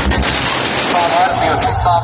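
A loud, even rushing noise, with people's voices coming in about a second in.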